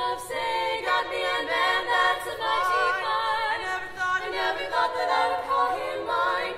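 Female vocal quartet singing a cappella, several voices at once in close harmony.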